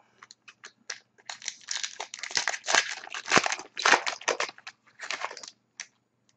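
Foil wrapper of a hockey card pack being torn open and crinkled by hand: a run of crackly rustling bursts lasting about four seconds, starting a little over a second in, after a few light clicks.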